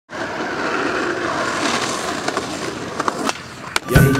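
Skateboard wheels rolling on asphalt, a steady rumbling noise that eases off near the end. A few sharp clacks of the board come through in the second half, the loudest just before the end.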